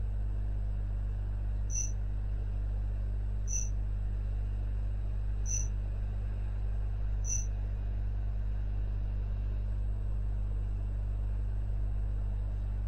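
Steady low electrical hum from the recording chain, with four faint short high blips evenly spaced about two seconds apart.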